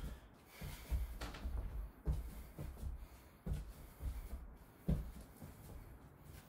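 Stockinged feet shuffling sideways on a wooden floor in a small room, landing with about four soft low thuds spaced just over a second apart.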